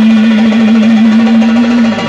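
Live song with electronic keyboard accompaniment and light percussion; one long held note runs through most of it and ends just before the end.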